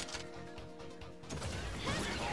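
Sound effect of a Kamen Rider transformation belt (the Desire Driver): steady electronic standby tones over fast mechanical clicking as the driver is turned, then the belt's announcer voice starting near the end, calling "Revolve On".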